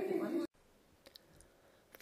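Indistinct voices in a room, cut off abruptly about a quarter of the way in, followed by near silence with a couple of faint clicks.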